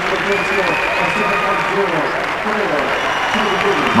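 Audience applauding and cheering for a winner being announced, with many excited voices overlapping in the hall.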